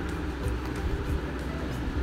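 A steady low rumble with a fainter hiss above it, unchanging throughout.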